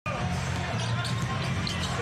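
Basketball being dribbled on a hardwood court over a steady murmur from a large arena crowd.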